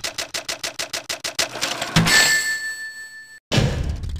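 A rapid run of ticks, about eight a second, fading away, then a single bright ding that rings out and dies over about a second and a half. A burst of noise starts near the end.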